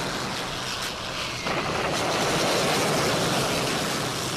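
Steady drone of dive bombers' propeller engines, a rough roar that turns louder abruptly about a second and a half in.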